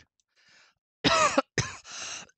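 A person coughing: two harsh coughs in quick succession, starting about a second in.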